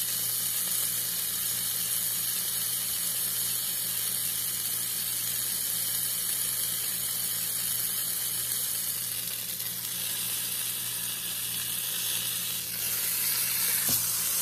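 Beef rump roast searing in hot oil in a slow cooker pot, a steady sizzle as the side browns, over a low steady hum. The sizzle dips slightly about ten seconds in and grows louder near the end.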